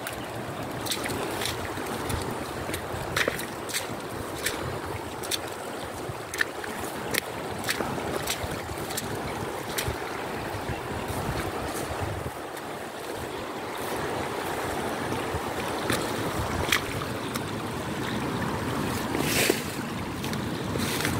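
Steady rushing noise of flowing floodwater and wind, with irregular sharp taps about once a second.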